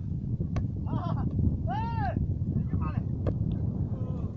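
Wind rumbling steadily on the microphone, with men calling out across an open football game; one long shout rises and falls about two seconds in, with shorter calls around it and a few sharp clicks.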